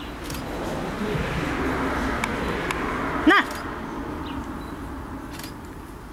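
A single short cry about three seconds in, bending up and down in pitch and the loudest sound here, over a rushing background noise that swells and then fades.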